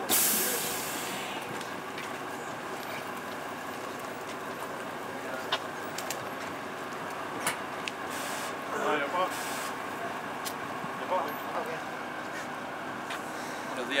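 Parked coach idling with a steady hum. A loud hiss of air about a second long opens it, and faint brief voices come about two-thirds of the way in.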